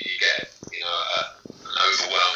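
A man talking over a video-call connection.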